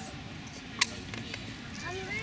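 Background chatter of children's and adults' voices, with one sharp click a little under a second in.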